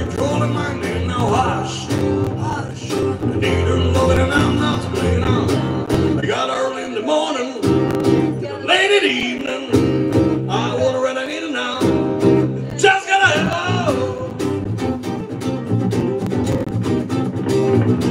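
A man singing live, accompanying himself on an acoustic guitar.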